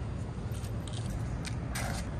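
Steady low outdoor rumble with a few short light scrapes or clicks, the loudest near the end.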